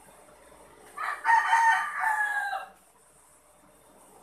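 A single loud bird call, starting about a second in and lasting about a second and a half, with a falling tail at the end.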